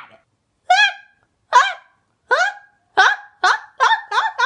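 A high-pitched voice giving short yelping cries, about six of them, each rising then falling in pitch; they come about a second apart at first and quicken near the end.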